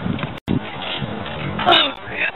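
Wordless vocal noises from a voice, with a short dropout to silence about half a second in and a louder pitched sound near the end.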